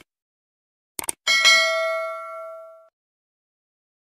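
Subscribe-button animation sound effect: a couple of quick clicks about a second in, then a single bell ding that rings out and fades over about a second and a half.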